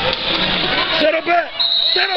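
Spectators chattering in a gym, then a man's shouted calls to a wrestler from about a second in.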